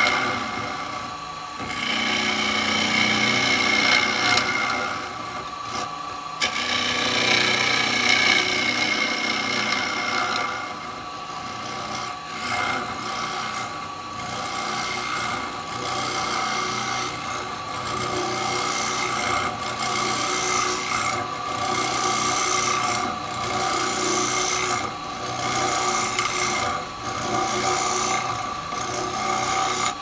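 Wood lathe running while a round carbide cutter scrapes into the centre of spinning wet wood, cutting a hole in the middle of the vessel. The scraping rises and falls with each pass over a steady whine.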